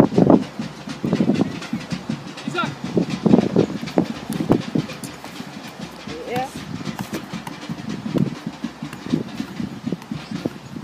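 Players and coaches shouting and calling out across a football pitch in short, irregular bursts. A few calls rise in pitch, one about six seconds in.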